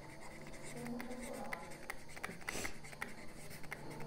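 Faint taps and short scratching strokes of a stylus writing on a tablet screen, over a faint steady hum.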